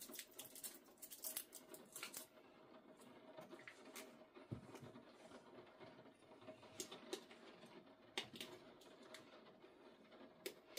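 Faint scattered clicks and rustles of small plastic parts being handled: AAA batteries being fitted into the battery compartment of a pair of electronic shooting earmuffs.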